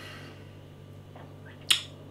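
A single sharp lip smack about one and a half seconds in, a mouth click from tasting a sip of lager.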